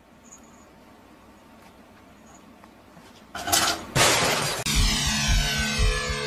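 Faint hiss, then a loud sudden crash about three seconds in and a second one just after. Then music with falling, sweeping tones over a steady low beat.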